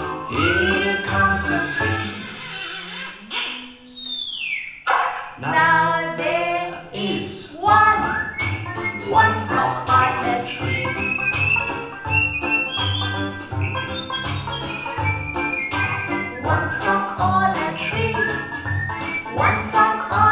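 A children's counting song about frogs on a tree: sung vocals over a steady bouncy beat, with a quick falling sound effect about four seconds in.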